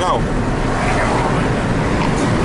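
Steady road and engine noise heard inside a moving car's cabin, a low rumble with a hiss of tyre and wind noise, under a spoken word at the start.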